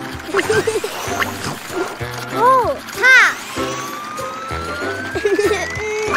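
Cartoon sound effects over children's background music with a steady beat: two quick boings, each rising then falling in pitch, about two and a half and three seconds in, followed by a long whistle that slowly rises in pitch.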